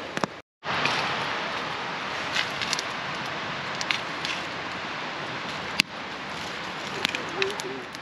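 Steady rush of river water with a campfire crackling, and scattered sharp pops and knocks as the burning wood is prodded with a long stick.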